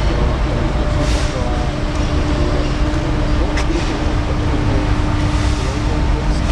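Steady low rumble of a vehicle running nearby, with a faint even hum through the middle and distant voices in the background.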